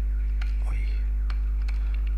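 Steady low electrical hum running under the recording, with a few separate sharp computer keyboard key clicks as code is typed.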